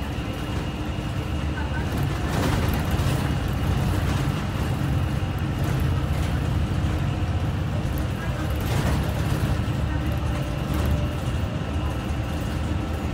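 City transit bus driving, heard from inside the passenger cabin: a steady low drone of engine and road noise with a faint high whine and a few brief rattles.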